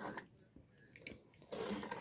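Faint sounds of a wooden spoon stirring thick, sugared raspberries in an enamel pot as the jam starts to cook. There are a few soft clicks, then a louder stretch of stirring near the end.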